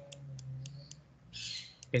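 A few light, sharp clicks of a stylus tapping on a pen tablet while handwriting, with a short hiss about one and a half seconds in, over a faint steady low hum.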